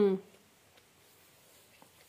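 A held, hummed 'ừ' (a Vietnamese 'yeah') ends just after the start. Then near quiet room tone, with a few faint small ticks.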